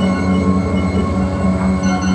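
Live free-improvised music from double bass, electronics and brass: a steady low drone of several held tones layered together, wavering slightly.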